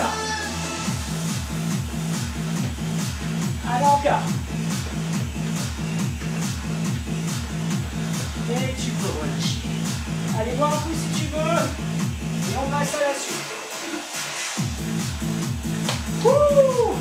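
Workout background music with a steady fast electronic beat and bass line. The bass and beat drop out briefly about thirteen seconds in, then return.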